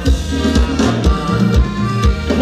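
Live band playing upbeat Thai ramwong dance music, with a drum kit keeping a steady kick-drum beat under a bass line.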